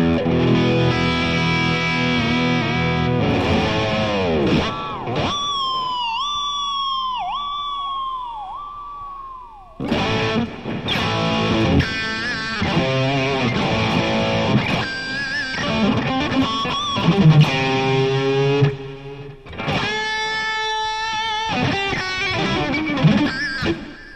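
Distorted electric guitar on a Kramer, played live: a ringing chord, then a held high note dipped in pitch several times, then chords and single-note licks with a fast run near the end.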